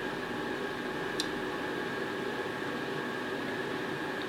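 Steady background hum and hiss of show ambience, with faint steady tones and a brief high click a little over a second in.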